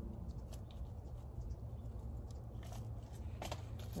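Seed starting mix poured from a plastic cup into a red plastic cup of soil, with faint rustling of the mix and a few light clicks of the plastic cups being handled near the end, over a low steady rumble.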